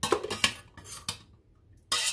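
Metal pan clattering against metal, a quick run of knocks and scrapes in the first second, then one more clank near the end.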